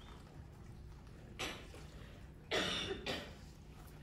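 A person coughing: one short cough, then a louder pair of coughs about a second later, over a low steady room hum.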